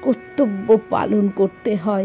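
A woman speaking in a narrating voice over soft background music with a steady held drone.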